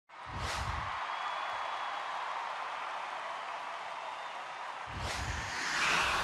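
Intro sound effects: a low whooshing hit just after the start and another about five seconds in, over a steady hiss. The second hit swells louder near the end.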